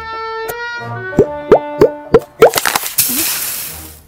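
Cartoon soundtrack: a few held music notes, then a run of about five short, sharp notes a third of a second apart, each dipping in pitch. About three seconds in, a hiss comes in and fades away.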